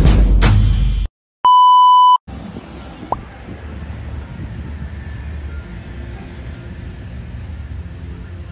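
Background music cuts off about a second in, followed by a steady electronic beep lasting under a second. Then outdoor roadside ambience with a low steady traffic rumble.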